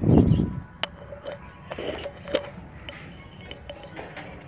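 A tomato being picked by hand off the plant: leaves rustling, a sharp click about a second in, and a few softer clicks. It opens with a loud, dull thump of handling or wind on the microphone.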